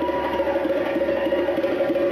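Live percussion trio of djembe, marimba and drum kit playing a sustained passage: several held pitched notes kept going by a fast roll, with no heavy drum beats.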